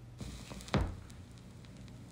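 Turntable stylus lowered onto a spinning vinyl record with the tonearm's cue lever: faint surface hiss comes up, with a single thump a little under a second in.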